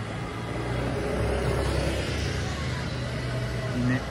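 Street traffic: a car running past on a city street, its low engine rumble and tyre hiss swelling about halfway through and then easing.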